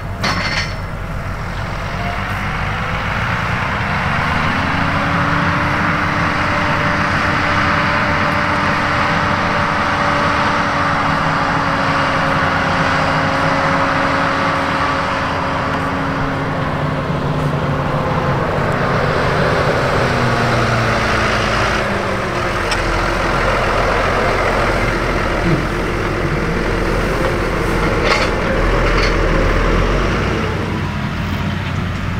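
New Holland front-loader tractor's diesel engine working hard, its revs rising about four seconds in, holding, then dropping back a little after twenty seconds. A few short knocks come near the end.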